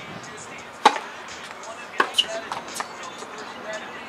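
Tennis ball struck by rackets and bouncing on a hard court during a rally: a few sharp pops, the loudest about a second in, then a quicker pair about two seconds in.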